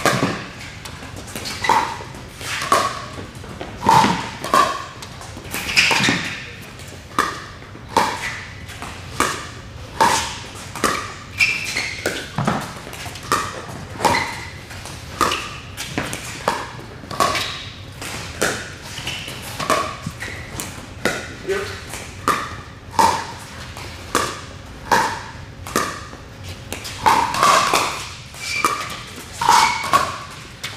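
Pickleball paddles hitting a hollow plastic pickleball back and forth in a long rally, a sharp knock with a short ring about once a second.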